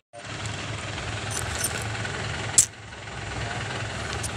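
Air compressor running with a steady low hum while a tyre is pumped up, with one short, loud hiss of air about two and a half seconds in.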